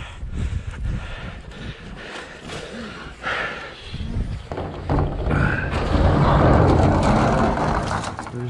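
Boots crunching through deep snow, then a louder, steady rushing noise over the last three seconds or so.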